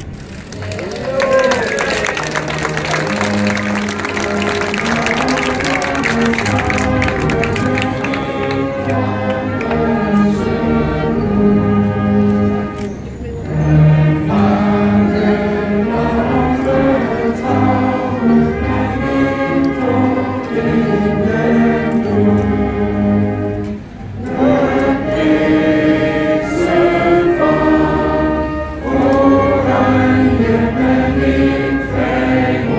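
A man singing through a PA, with other voices singing along. Applause runs under the first several seconds, and the singing goes on in long held phrases with short pauses for breath.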